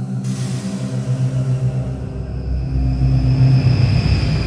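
Logo-reveal sound sting: a low drone with a hiss at the start that swells in loudness, with high ringing tones coming in about halfway through.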